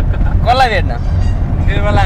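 Steady low rumble of a car on the move, heard from inside the cabin, with a voice speaking briefly about half a second in and again near the end.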